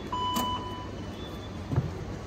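NS OV-chipkaart card reader giving a single check-in beep, a steady tone lasting under a second. A thump follows near the end.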